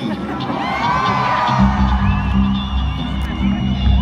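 Arena crowd whooping and cheering, then about a second and a half in the band comes in with a loud sustained low bass and guitar note, a wavering high tone held above it.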